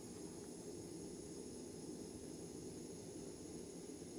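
Small gas cartridge burner's flame burning with a faint, steady rush.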